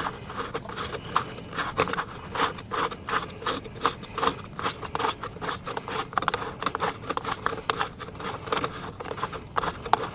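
Hands working at an outdoor light fixture close to the microphone: irregular scraping, rubbing and small clicks of fingers and parts against the fixture's housing, with no steady rhythm.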